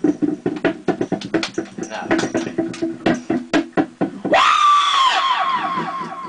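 Rapid percussive pops and clicks amplified through a karaoke microphone and speaker, then about four seconds in a loud, high vocal cry into the microphone that falls in pitch in fluttering steps.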